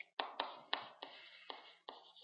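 Stylus tapping and stroking on a tablet screen while handwriting. About seven sharp taps come at uneven intervals, each dying away quickly.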